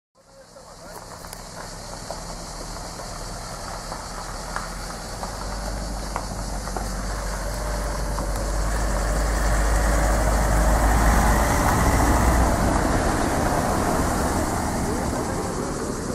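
Motor vehicle engines running as cars and vans move off, with a deep rumble. The sound builds gradually to a peak about two-thirds of the way through, then eases off a little.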